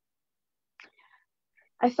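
Near silence on a video call line, broken by a faint short sound a little under a second in, then a person starts reading aloud near the end.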